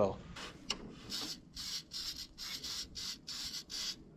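Aerosol battery terminal protector spray hissing in a series of short bursts, a few a second, as it is sprayed onto the battery terminals and cable ends.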